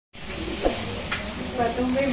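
Hot oil sizzling steadily in a wok as tumpi fritter crackers deep-fry, with a single light knock about two-thirds of a second in; a voice begins near the end.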